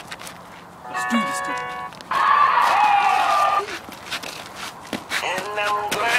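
Young men's voices: a drawn-out call about a second in, then a loud yell lasting about a second and a half, falling in pitch at the end.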